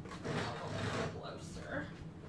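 Rubbing and sliding noise from hands handling a plastic cutting mat and moving the pinch rollers of a Silhouette Cameo 4 cutting machine, a steady scraping that is a little stronger in the first second.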